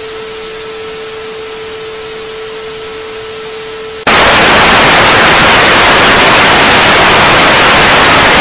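A steady mid-pitched tone over hiss, paired with glitching colour bars. About four seconds in, it cuts abruptly to loud, even TV static.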